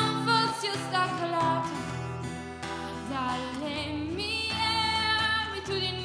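A woman singing live while strumming an acoustic guitar, solo, with long wavering held notes in the second half.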